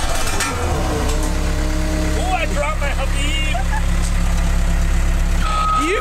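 Diesel engine of a CAT road roller running steadily as its steel drum rolls over gravel. A voice is heard briefly partway through.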